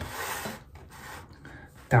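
A knife cutting into a layered sponge cake with cream: one scraping stroke of about half a second at the start, then fainter sounds of the blade.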